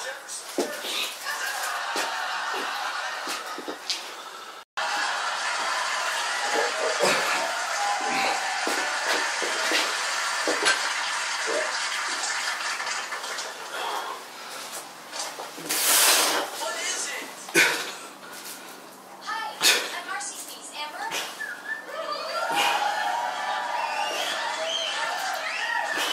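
Indistinct voices over a steady noisy background with faint music, like a film or TV soundtrack; it drops out for an instant about five seconds in, and a few sharp knocks come in the second half.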